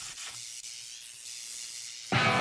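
Steady hiss with a faint low hum, typical of a guitar amplifier idling with the gain up before an electric guitar chord.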